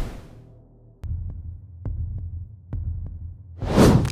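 Dramatic sound design under edited footage: a whoosh fades out at the start, then a low throbbing drone begins about a second in, with a few faint ticks over it. A rising whoosh swells near the end as a transition.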